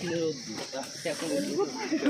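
Faint voices of people talking nearby, over a steady high-pitched hiss of insects in the surrounding trees.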